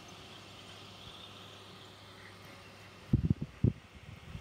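Quiet outdoor background hiss, then a cluster of four or five short, loud, low thumps a little after three seconds in, the kind of knocks that handling or wind buffeting makes on a handheld camera's microphone.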